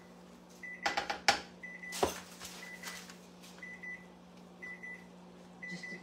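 Electric oven beeping: a short high beep about once a second, as an alert that keeps repeating. A few sharp clatters from cooking at the pot come about one and two seconds in, over a steady low hum.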